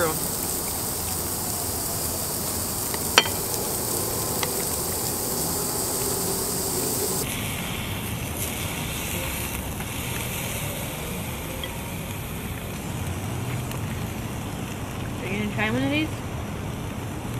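Sliced meat sizzling on an electric tabletop Korean barbecue grill, a steady hiss, with one sharp click about three seconds in.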